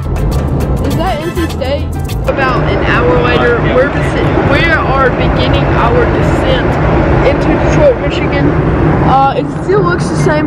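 Steady low drone of an airliner cabin in flight, with people's voices talking over it.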